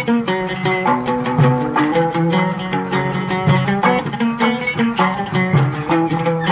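Instrumental interlude of Arabic music with no singing: an oud playing a run of plucked notes that change pitch several times a second.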